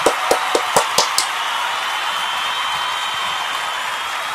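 About six hand claps, roughly four a second, ending a little over a second in, over a steady background hiss.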